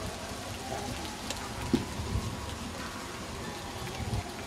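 Steady outdoor background noise with a low rumble, broken by two brief thumps about two seconds in.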